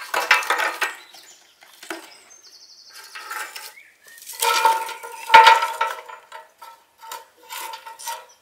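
Lumps of charcoal clinking and clattering against each other and the steel grill box as they are set around wood kindling. The knocks come in bursts: one at the start, the loudest cluster in the middle with a glassy ring, and lighter ones near the end.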